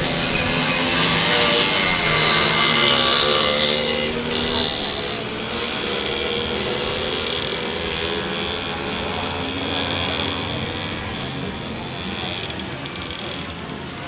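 Several two-stroke moped engines racing, buzzing and revving, their pitch rising and falling as the riders work the throttles.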